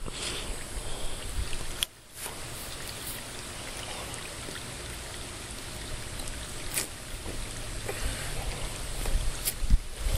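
Steady outdoor noise of pool water lapping, with wind on the microphone and a brief dropout about two seconds in. A few faint clicks, and low wind rumble near the end.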